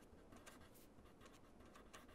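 Pen writing on paper: a faint run of short, irregular scratching strokes as a word is written out.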